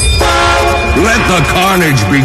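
Vinahouse dance mix in a break: the bass beat drops out, a held horn-like chord sounds, and from about a second in a pitch-bent voice sample swoops up and down repeatedly.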